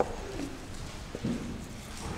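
Marker pen writing on a whiteboard: a sharp tap at the start and another just past a second in, with faint short squeaks of the tip between.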